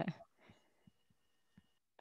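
Near silence on a video-call audio line after a word trails off: a few faint, short low thumps about half a second apart, with a faint thin steady tone, then the line goes dead silent for a moment.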